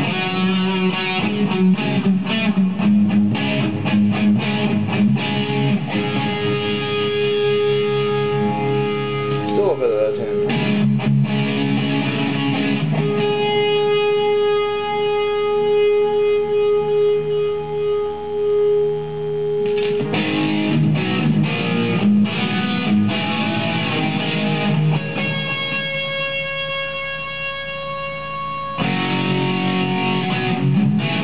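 Electric guitar (a 2007 Mexican-made Fender Lonestar Stratocaster) played through an amp with a rock punch tone on its bridge humbucker, a Seymour Duncan Duncan Distortion. Riffs and chords are broken by a sliding note about ten seconds in. Single notes are left to ring for several seconds, one mid-way through and another near the end.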